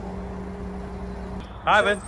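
Steady mechanical hum over a low rumble, stopping abruptly about one and a half seconds in; then a short, high-pitched spoken 'hi'.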